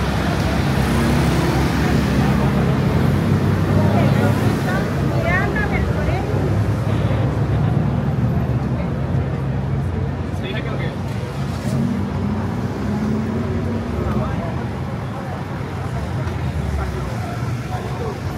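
Busy street traffic with bus engines running close by, a steady low hum under the passing traffic, and people talking in the crowd.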